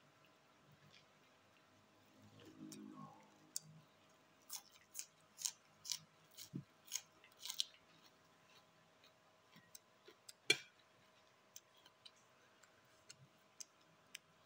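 A person chewing a mouthful of rice and raw vegetables close to the microphone, with a quick run of about eight crisp crunches, then one louder sharp crunch a few seconds later.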